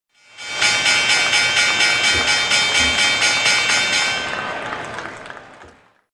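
Logo sting: a synthesized chord of many held tones pulsing about four times a second, which thins out and fades away over the last two seconds.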